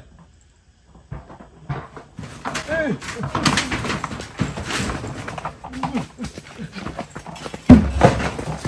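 A scuffle at a corrugated-metal shack door: clattering and knocking of metal and a plastic bucket being shoved out, with a short wavering cry about three seconds in and a loud thump near the end.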